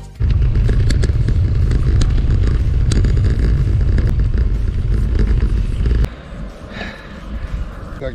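Loud low wind rumble buffeting a handlebar-mounted camera's microphone while riding, with scattered knocks from the road. It cuts off abruptly about six seconds in, leaving quieter riding noise.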